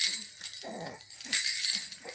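A baby's jhunjhuna, a plastic rattle with small metal bells, jingling as the baby shakes it, loudest at the start and again in the second half. Short baby vocal sounds come in between, the longest just before the middle.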